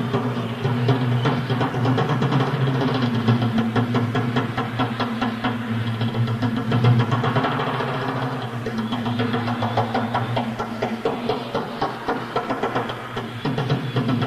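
Live rock drum solo on a drum kit: a fast, continuous run of drum strokes over a steady low rumble, heard through a raw audience-recorded bootleg tape.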